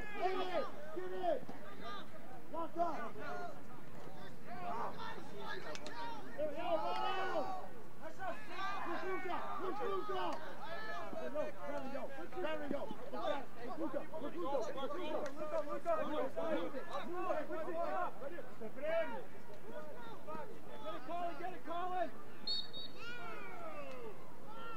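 Indistinct shouting and calls from lacrosse players and coaches during play, several voices overlapping with no clear words.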